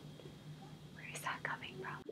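Faint whispering under the breath, a few short hissy syllables starting about a second in, over a low steady room hum.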